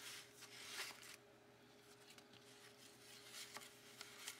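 Near silence: faint rustling and light taps of paper cards being handled and slid into paper pockets, over a faint steady hum.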